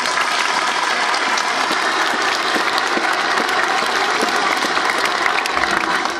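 A large crowd applauding: a dense, steady patter of many hands clapping at once.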